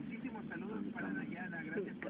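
Indistinct voices talking in the background over a steady low rumble of street traffic.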